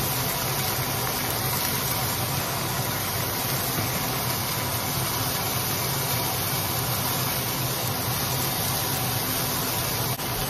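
Steak searing in a hot stainless-steel skillet over a gas burner: a steady sizzle over an even low hum.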